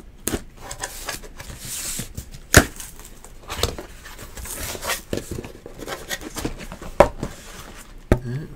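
A cardboard case of trading-card hobby boxes being opened and unpacked by hand: rustling and scraping cardboard, a short scratchy noise about two seconds in, and scattered sharp knocks as boxes are handled. The loudest knocks come about two and a half seconds in and again near seven seconds.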